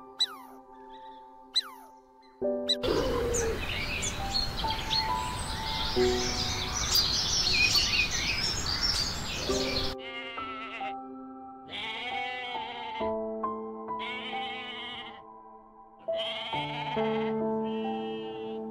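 Goat bleating four times, each call about a second long with a wavering pitch, starting about ten seconds in, over soft piano background music. Before the bleats, a steady hiss with high chirps runs under the music.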